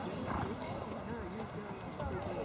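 Indistinct talk of nearby onlookers over the hoofbeats of a horse cantering on a sand arena.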